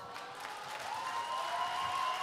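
Audience applauding, the clapping swelling over the first second, with a few held voice-like tones rising above it.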